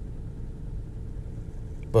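A low, steady rumble of background noise.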